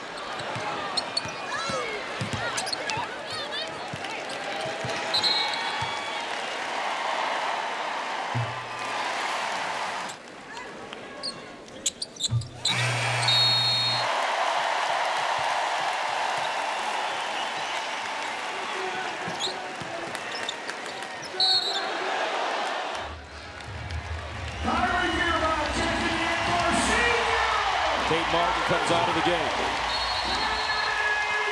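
Arena crowd noise over live basketball play: a ball dribbling, sneakers squeaking on the hardwood and a few short, shrill referee whistle blasts. About 24 seconds in the crowd swells into loud cheering and applause.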